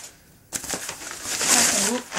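Brown paper wrapping rustling and crinkling as a cardboard box is pulled out of it, starting suddenly about half a second in after a moment of near quiet.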